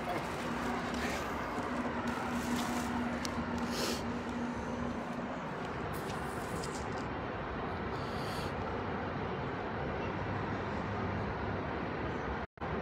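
Outdoor street background: a steady wash of traffic noise, with a steady low hum that stops about five seconds in.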